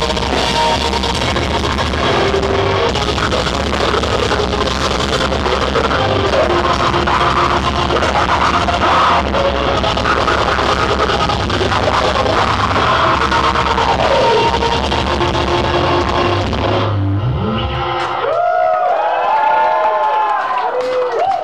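Deathcore band playing live through a club PA: heavy distorted guitars, drums and screamed vocals in a dense wall of sound. The song ends abruptly near the end, and scattered shouts from the crowd follow.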